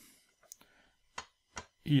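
Translucent plastic board-game building pieces clicking lightly against each other as they are picked up and fitted together: a few short, separate clicks.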